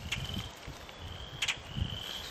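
Insects trilling: a thin, steady high trill that comes and goes in stretches, over a low rumbling noise. A single sharp click sounds about one and a half seconds in.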